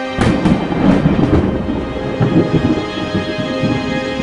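A thunderclap over intro theme music: a sharp crack about a quarter of a second in, then a rolling rumble that dies away over the next few seconds.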